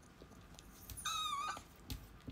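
A pet dog giving one short, high whine about a second in, followed by a light click.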